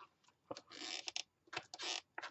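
Crinkling and scraping handling noise from craft materials being worked by hand, in two short bursts with a few small clicks.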